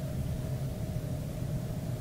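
Steady low background hum and faint hiss of room tone, with no distinct sound event.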